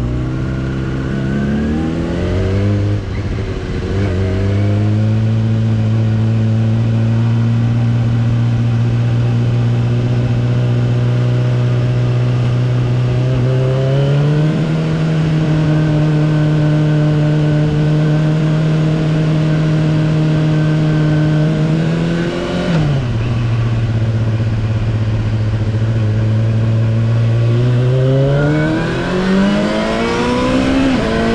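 Yamaha R6 inline-four sport-bike engine under way, heard from on board. The revs climb at first, drop about three seconds in, and then hold steady for long stretches. They step up to a higher steady pitch about midway, fall back a few seconds later and climb again near the end.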